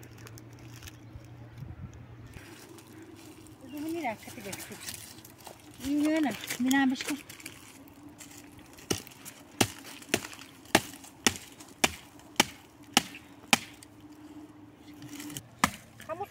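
Chopping at the thin branches of a small tree: a steady series of about a dozen sharp strikes, a little under two a second, starting about nine seconds in.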